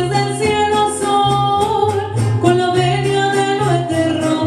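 Mariachi band playing and singing, the voice holding long notes over a moving bass line.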